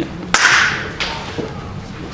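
A single sharp hand clap about a third of a second in, followed by a brief hiss and two fainter clicks.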